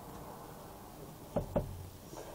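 Two quick knocks about a fifth of a second apart, about a second and a half in, from a folding pocket knife being handled, over low room hiss.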